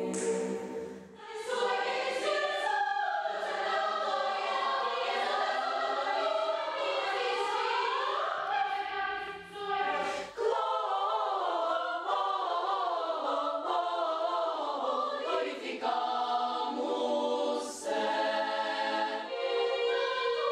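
Children's choir singing, mostly in high voices, with held chords and gliding lines. The sound changes abruptly about a second in and again at about ten seconds, as from one passage or recording to another.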